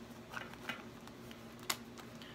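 Faint handling sounds of a key holder being put back into a zippered pouch: three short clicks, the loudest near the end.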